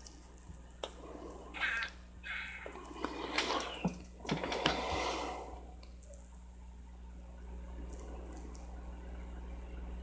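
Quiet room with a steady low electrical hum, a few faint clicks, and short soft rustling noises in the first half.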